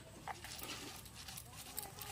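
Stone hand-muller scraping and knocking on a flat grinding stone (shil-nora) as spices are ground into a paste: faint, irregular rasps and small clicks.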